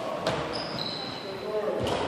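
Sports hall sounds on a badminton court: two sharp knocks about a second and a half apart, a brief high squeak just after the first, with voices carrying in the large hall.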